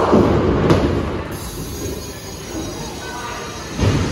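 Ten-pin bowling ball rolling down a wooden lane after release, a steady low rumble, with a louder clatter near the end as it reaches the pins.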